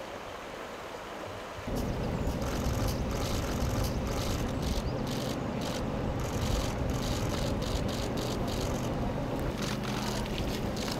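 A river running over stones, getting louder and fuller about two seconds in, with a low steady hum underneath and footsteps crunching on the pebbles of the bank.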